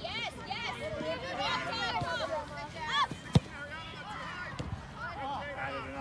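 Many voices of players and sideline spectators calling and shouting over one another, with a single sharp knock a little past halfway that is the loudest sound.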